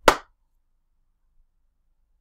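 A single sharp, clap-like smack right at the start, dying away within a quarter second.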